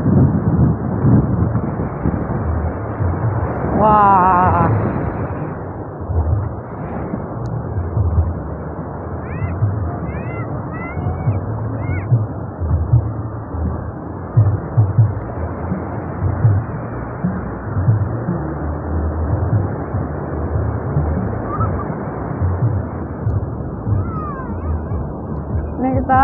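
Ocean surf washing in over a flat sandy beach, a steady rushing noise with uneven low rumbling underneath.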